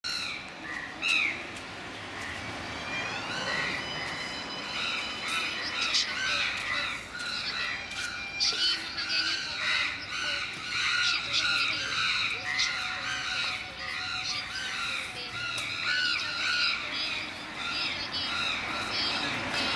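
Many birds chirping and squawking, a dense run of short, high repeated calls, over voices.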